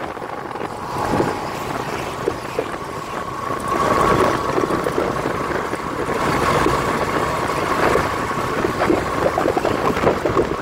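Small motorcycle engines running steadily at riding speed, with road and wind noise, heard from a moving motorbike. A faint steady whine sits over the rumble.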